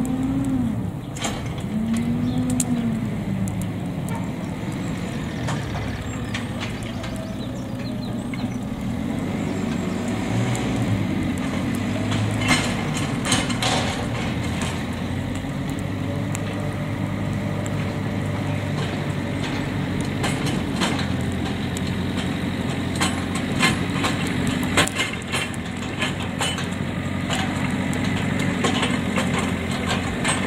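Burning straw bales crackling and popping over the steady low running of a diesel engine, most likely the farm loader. Near the start there are two short rising-and-falling tones.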